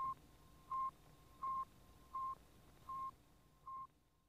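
Sputnik 1's radio beacon signal: a regular series of short, single-pitched beeps, about three every two seconds, six in all, growing gradually fainter.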